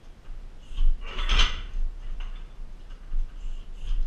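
A kick landing hard on a car tyre mounted on a boxing stand weighted to 100 kg, one loud impact about a second and a half in, with smaller knocks from the stand and swinging tyre around it.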